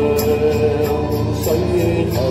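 Live band music from a slow Cantonese pop oldie: electric guitar and bass under a long held melody note that slides to a new pitch about one and a half seconds in, with a light tick keeping a steady beat.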